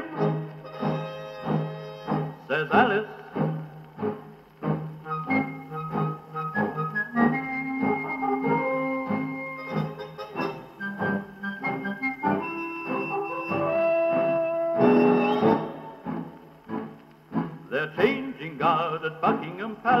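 Instrumental break of a dance band playing from a shellac 78 rpm record on a portable acoustic gramophone with a BCN needle, with low surface noise. The band plays held notes over a steady rhythm, with the narrow, top-cut tone of the old record, and the singer comes back in at the very end.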